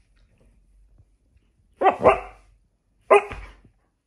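Puppy barking at an artificial chew bone as if it were a live animal: a quick double bark about two seconds in, then one more bark a second later.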